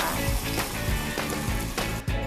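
Strong brewed coffee poured into hot caramel in a frying pan, hissing and bubbling, over background music.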